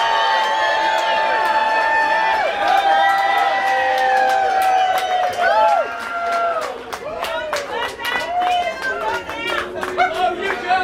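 Club audience cheering for an encore: long held whoops over crowd noise, then clapping and scattered shouts from about six seconds in.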